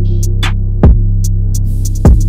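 UK drill beat instrumental: a loud, sustained 808 bass held under the track, a kick drum with a quick falling pitch sweep about a second in, a snare hit and sparse hi-hat ticks.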